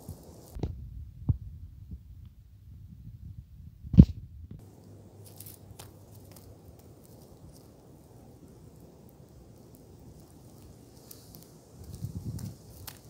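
A few dull thumps from plastic toy horse figurines being handled and set down on dirt, the loudest about four seconds in, then a faint steady hiss of outdoor air.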